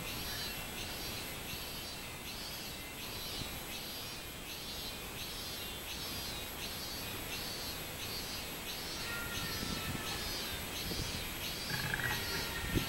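Robust cicada (minminzemi, Hyalessa maculaticollis) singing from the tree: a steady run of repeated pulsing 'meen' phrases, about three every two seconds.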